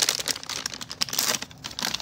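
A plastic packaging bag and its white paper wrapping crinkle and rustle in irregular crackles as hands pull a paint-covered doll out, the doll sticking a little to the bag.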